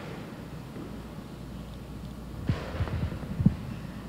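Handling noise on a handheld microphone: a cluster of short low thumps starting about two and a half seconds in, the sharpest near the end, over a steady low hum.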